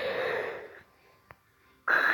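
A person's long, noisy breath out through a wide-open mouth, fading away within about a second. A faint click follows, and another sharp breath comes near the end.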